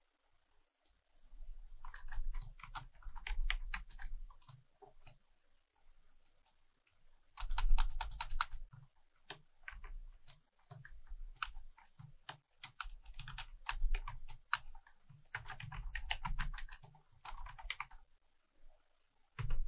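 Typing on a computer keyboard: runs of rapid keystrokes in bursts, starting about a second in, with a pause of a couple of seconds near the middle.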